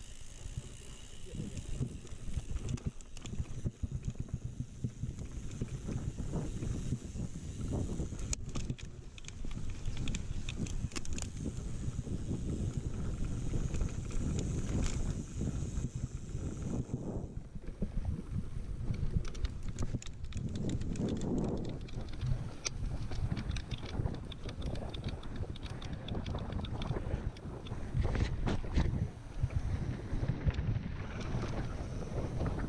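Mountain bike riding fast down a bumpy grass slope: wind rumbling on the camera's microphone, with the bike's chain and frame rattling and clicking over the bumps throughout.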